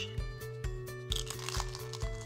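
Crunching of a bite into a crispy deep-fried spring roll, loudest about a second in, over background music with a steady beat.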